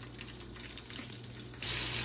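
Oil sizzling in a deep fryer as breaded catfish fries: a faint hiss that suddenly gets louder about one and a half seconds in, over a steady low hum.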